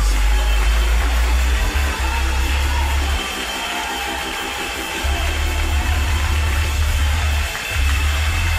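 Church band music with deep sustained bass notes, which drop out for about two seconds midway, under a congregation clapping.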